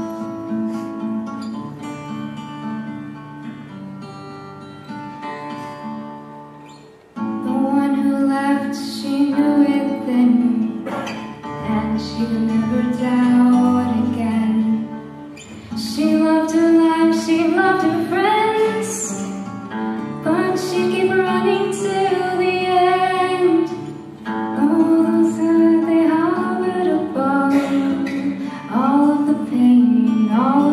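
An acoustic guitar plays alone, then a young woman's solo voice comes in over it about seven seconds in, singing into a microphone in long phrases with short breaks.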